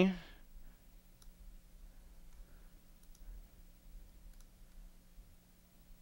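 Quiet room with a steady low hum and a handful of faint, scattered clicks from computer controls, such as a mouse or keys, being worked.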